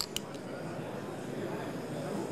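Two quick clicks from a handheld gas soldering torch, then the steady rushing hiss of its flame as it heats a small metal part for soldering.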